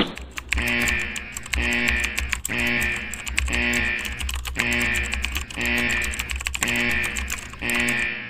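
Computer-keyboard typing sound effect: a rapid run of key clicks that swells and fades about once a second, as in a looped sample.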